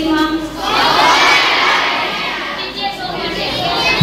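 A hall full of schoolchildren shouting together: the burst starts just under a second in, peaks, then dies away over the next two seconds. A woman's voice is heard briefly before and after it.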